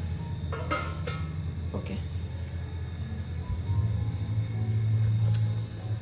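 A few light metallic clinks of steel cookware, a steel plate being set as a lid on a steel cake tin sitting in a pan. They come twice in quick succession about three-quarters of a second in, once more near 2 s, and again near the end, over a steady low hum that swells in the second half.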